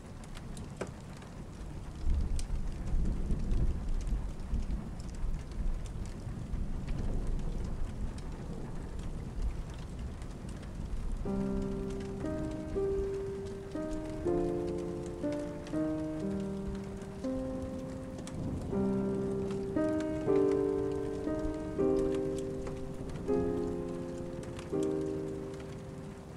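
Steady rain hissing against the windows, with a deep rumble of thunder that starts about two seconds in and lasts several seconds. About eleven seconds in, soft instrumental music begins over the rain, its notes played one after another and each fading away.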